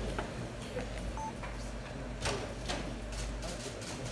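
Scattered camera shutter clicks and one short electronic beep about a second in, over a steady low hum.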